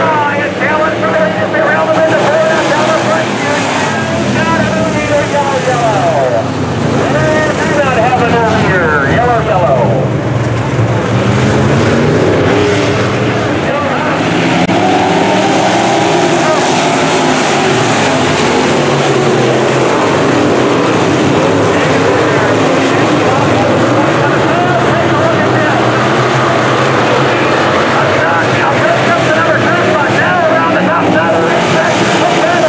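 A pack of dirt-track sport modified race cars racing at full throttle, their V8 engines running loud and rising and falling in pitch as the cars pass and swing through the turns.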